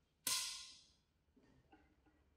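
A single sudden crash about a quarter second in, bright and ringing, fading out within about half a second.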